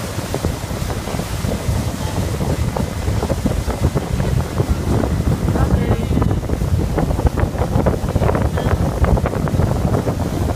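Wind buffeting the microphone of a motorboat running at speed, over the boat's engine and the rush of its wake. The buffeting comes in gusts and grows stronger from about halfway through.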